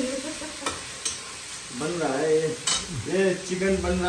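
A metal spatula stirring and scraping in a steel kadai of frying vegetable curry over a gas burner, with a steady sizzle and a few sharp clinks of metal on the pan.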